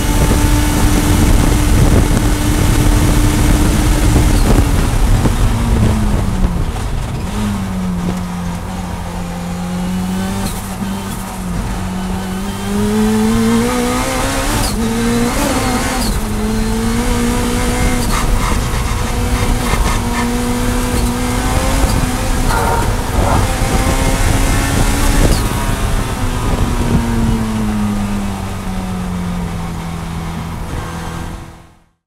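Turbocharged Honda K20 four-cylinder race engine heard from inside the cabin. It is held flat out near 8,800 rpm in top gear for about five seconds, drops as the driver brakes and downshifts, then pulls back up through the gears with quick upshifts before easing off near the end.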